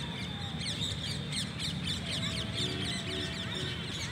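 Many birds chirping in the trees, a dense run of short, quick chirps throughout, over a steady low background rumble.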